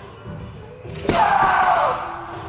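A loaded barbell with bumper plates dropped to the gym floor after a deadlift: one sharp thud about a second in, followed by nearly a second of loud noise, over background music.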